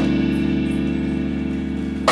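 Live band holding a sustained chord on keyboard and electric bass, fading slowly, with the tail of a cymbal-accented stab at the start.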